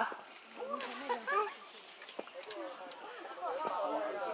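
Faint background chatter of several people's voices, with a few short clicks about two seconds in.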